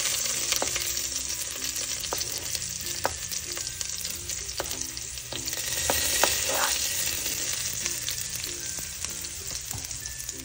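Sliced ginger sizzling in hot oil in a pot, a steady frying hiss, with a few sharp taps of a plastic spatula against the pot and cutting board about every second or so.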